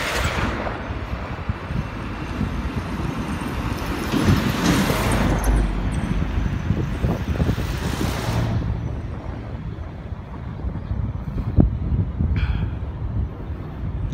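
Road traffic passing close by: cars and a van driving past, their engine and tyre noise swelling and fading, loudest at the start and again around four to five and eight seconds in, over a steady low rumble.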